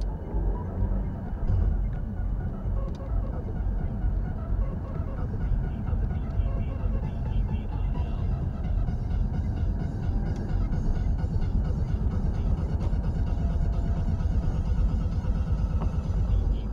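Music, probably from the car's radio, playing inside a moving car's cabin over steady engine and road rumble.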